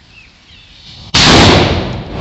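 Diwali firecracker rocket going off about a second in: a sudden, very loud rush of hissing and crackling as it ignites and sprays sparks, easing off but still hissing near the end.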